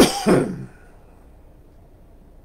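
A man coughing into his fist: a short cough of two quick bursts in the first half-second or so, then nothing but room hum.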